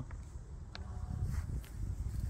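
Faint footsteps on garden soil over a low, uneven rumble of noise on the microphone, with a few small clicks.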